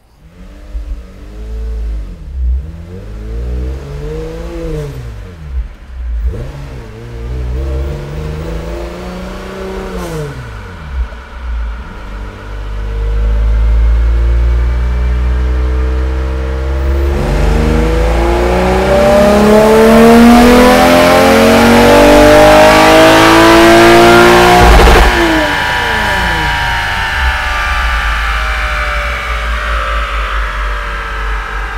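Toyota 2GR-FE V6 engine on a chassis dyno: a few short revs that rise and fall, then a full-throttle dyno pull with the pitch climbing steadily for about twelve seconds. The throttle snaps shut near the end and the revs fall away.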